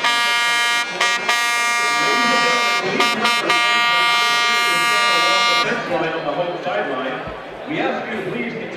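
A loud, steady horn blast on one pitch, broken by a few brief dips, lasting about five and a half seconds before it stops.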